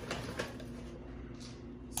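Faint rustle and rattle of dry dog kibble as a small plastic scoop is dug into a kibble bag and lifted out full, over a steady low room hum. A short sharp click near the end.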